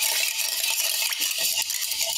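Ice cubes stirred with a long bar spoon in a metal mixing tin: a steady, fast rattle and clink of ice against the metal, the stirring that chills and dilutes a whiskey-based Boulevardier cocktail.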